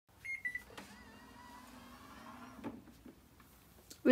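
Bio Bidet Discovery DLS smart toilet seat giving a couple of short electronic beeps, then its automatic lid lifting open with a faint, steady motor whir that ends with a click about two and a half seconds in.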